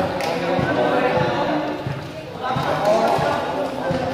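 Men's voices talking and calling, with a few dull thuds of a volleyball.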